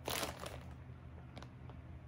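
A brief crinkle of plastic packaging being handled right at the start, followed by a few faint clicks over a steady low room hum.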